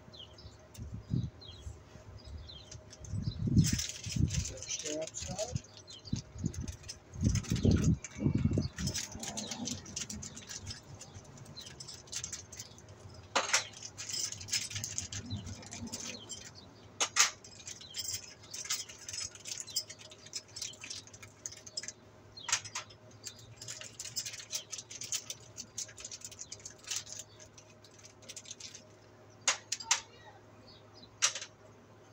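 Hands handling small installation hardware and packaging: irregular clicks, light rattles and rustling, with a few dull knocks in the first ten seconds.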